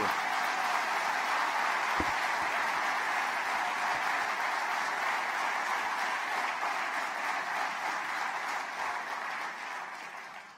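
Audience applauding: a steady wash of many hands clapping that fades away near the end.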